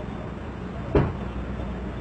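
Steady low drone of idling vehicle engines, with a single sharp thump about a second in.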